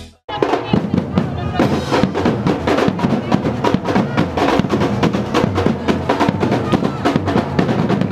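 Street percussion group playing a fast, dense drum rhythm on large drums struck with sticks and hands, with frame drums.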